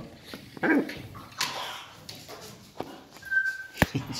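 Pet parrot calls: a few short vocal sounds, then a brief steady whistle about three seconds in. A sharp click comes just before the end.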